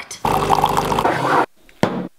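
Short edited-in sound effect: a buzzy, pitched sound lasting about a second, then a brief second hit just before the cut to silence.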